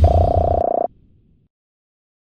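An outro sound effect: a buzzy tone over a low rumble and a high hiss, cutting off abruptly just under a second in.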